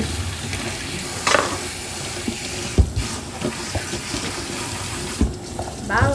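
Kitchen faucet running, its stream splashing over a head of hair and into a stainless steel sink, with a few short knocks. The flow drops away near the end.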